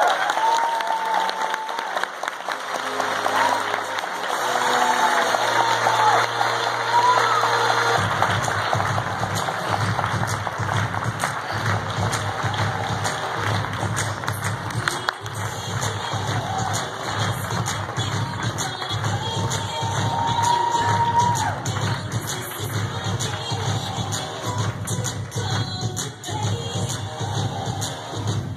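A crowd cheers and applauds, with excited high shrieks in the first several seconds. Music plays throughout, and a steady pulsing bass beat comes in about eight seconds in.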